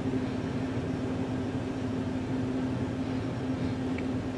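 Steady mechanical room hum with one held low tone, unchanging throughout.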